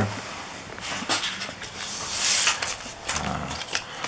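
Handling noise around a rifle scope on a table: a few light clicks about a second in, then a brief rustling hiss a little past the middle.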